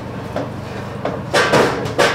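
Metal clunk and rattle from handling the open door and inner works of an old Pepsi vending machine: a faint knock early, then a louder clunk about one and a half seconds in.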